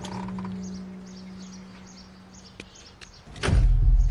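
Background music fades out, then about three and a half seconds in a military four-wheel-drive comes in suddenly and loud, its engine a sustained low rumble.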